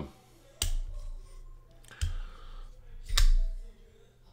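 Brous Blades Division flipper knife clicking three times, about a second apart, as its blade is flipped and locks up; the last click is the loudest.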